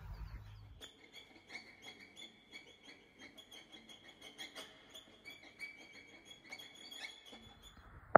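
Faint, high chirping of small birds, made of many short ticks and chirps.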